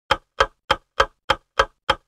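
A ticking-clock sound effect: sharp, even ticks at about three a second, with dead silence between them.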